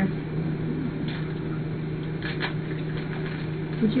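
A steady low hum, with a few faint ticks and crinkles as a plastic package is cut open by hand.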